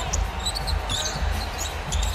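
Live court sound of a basketball game: a basketball dribbled on the hardwood floor, with short sneaker squeaks and a steady low arena background.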